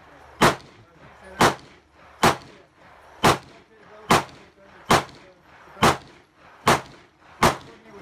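A series of nine sharp clicks or bangs, evenly spaced at about one a second.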